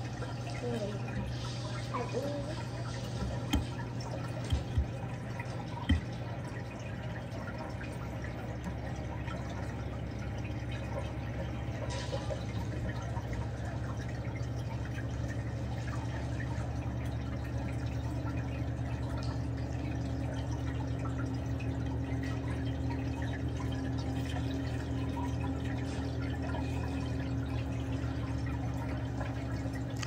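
Reef aquarium's water pumps running with a steady low hum, water trickling and dripping over it. A few sharp clicks come in the first six seconds, and a steady higher tone joins the hum about halfway through.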